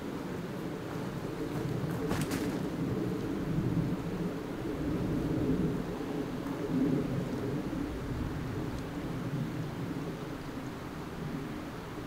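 Steady low rumble of wind buffeting the microphone, with a short crackle about two seconds in.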